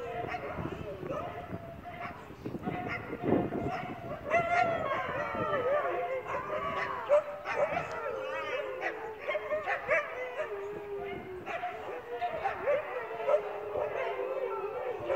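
A pack of Siberian huskies howling together in chorus: many overlapping howls wavering up and down in pitch, with short yips mixed in.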